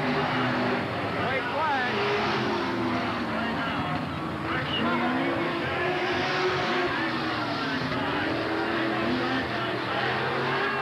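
Stock-car racing engines running around the track, their pitch rising and falling as the cars pass and throttle through the turns, with indistinct voices nearby.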